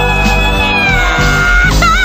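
Mass choir of young voices singing a slow funeral song. A long held note glides down about a second in, and wavering voices with vibrato come in near the end.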